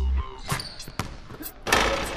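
Basketball bouncing a few times on a hardwood gym floor, then a dunk: a loud slam at the rim near the end, echoing in the large gym.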